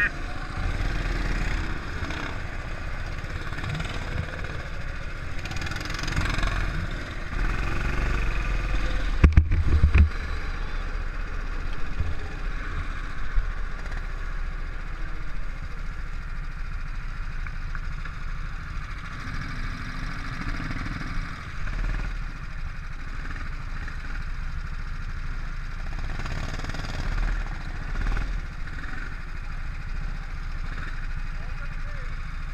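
Go-kart engine running at low speed as the kart rolls slowly, heard from an onboard camera with wind and vibration rumble on the microphone, and a heavy thump about nine seconds in.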